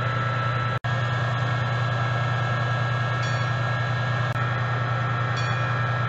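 Diesel train running steadily with a low, even hum and a faint steady whine above it, with a split-second break in the sound just under a second in.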